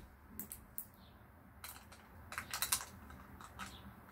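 Peel-off sealed lid of a small plastic sauce dip pot being picked at and pulled back: a few light clicks at first, then runs of crinkly crackling from about halfway in.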